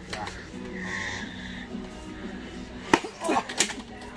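Background music playing in a large store, with faint voices, a sharp knock about three seconds in, and a brief voice just after.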